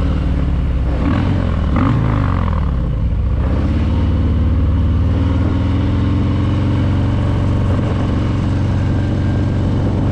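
Harley-Davidson Fat Boy's 117 cubic-inch V-twin engine running under way at low street speed. Its pitch shifts briefly about a second or two in, then holds steady.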